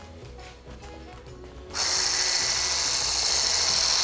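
Electric hand blender switched on nearly two seconds in and running steadily with a high-pitched whir as it blends a milky mixture in a tall beaker.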